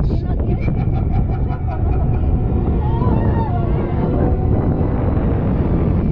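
Wind buffeting the rider's microphone at the top of a drop-tower ride, making a steady loud rumble. Indistinct voices are heard over it.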